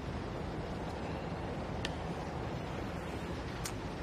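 Steady room noise with two faint, short clicks, one a little under two seconds in and one near the end, from hands working the bike rack's plastic cradles and rubber straps.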